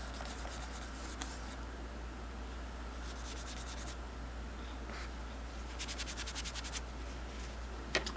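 Cloth rubbing over the black finish of a Singer 221 Featherweight sewing machine's bed, buffing off sewing machine oil. The rubbing comes in three spells of quick back-and-forth strokes: near the start, about three seconds in, and about six seconds in.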